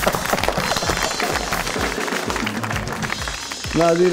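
Hands clapping over background music.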